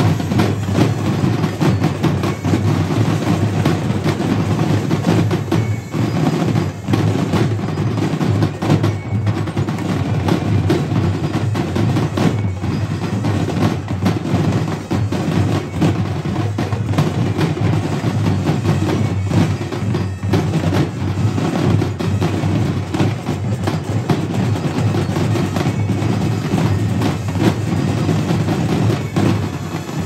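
Drum and bugle corps drumline of snare, tenor and bass drums playing a continuous, densely struck cadence with rolls.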